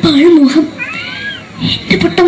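A boy imitating a cat into a stage microphone. A wavering, drawn-out low cry is followed about a second in by a high meow that rises and falls.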